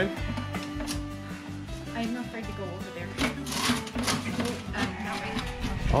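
Background music: held notes stepping between pitches over a low bass line, with a few short rustles about halfway through.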